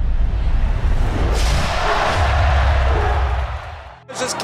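Intro sound effect for an animated logo: a deep rumble with a whoosh that swells up about a second in and fades away near the end.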